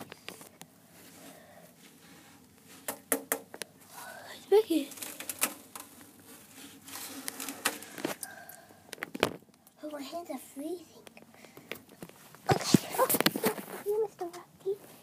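A child's voice in short, soft snatches, with scattered sharp clicks and knocks between them.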